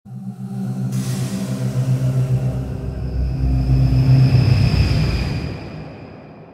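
Logo intro music: sustained low tones with a whooshing swell and a deep bass rumble that builds in the middle, then fades out near the end.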